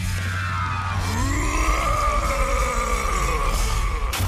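Cartoon transformation music and sound effects: a steady low drone, joined about a second in by a long pitched swell that rises and then falls away.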